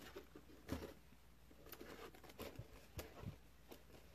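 Faint, scattered taps and light rustles of a cardboard costume box being handled and set upright.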